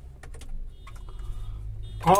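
A few light clicks and taps in a car cabin, most of them in the first half-second and a couple more about a second in, over a low steady hum.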